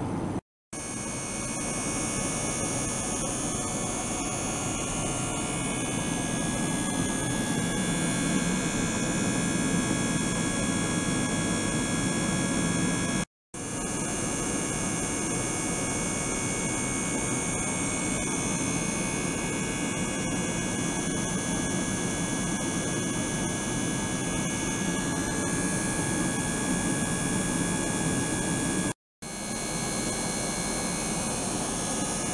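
Small motor pump circulating water through an ultrasonic tank, running steadily, with several thin steady high-pitched tones over it. The sound cuts out briefly three times: near the start, in the middle and near the end.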